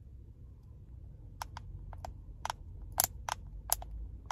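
Small sharp plastic clicks, about ten in an irregular run starting about a second and a half in, as a small plastic ampoule of test buffer is squeezed and handled over the tube of a home antigen test kit, over a low steady rumble.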